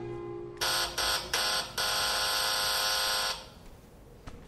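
Electric doorbell buzzer pressed in three short bursts, then held for one long buzz of about a second and a half: someone at the door insisting on being let in.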